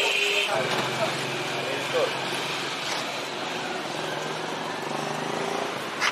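Steady low hum of a vehicle engine running, with faint voices in the background.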